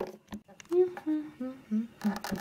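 A voice humming four short notes, each a little lower than the last, starting about a second in. A couple of faint clicks come just before.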